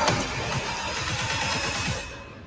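Trailer soundtrack: dense dramatic music mixed with rumbling sound effects, beginning to fade right at the end.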